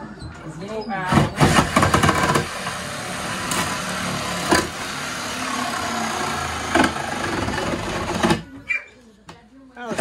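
Cordless reciprocating saw cutting into the wooden wall framing, starting about a second in, running steadily, and stopping suddenly near the end.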